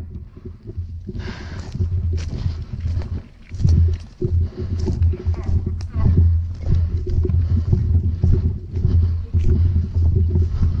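Running on foot through grass, with irregular footfalls and gear knocking, and wind and movement buffeting the helmet camera's microphone in an uneven rumble.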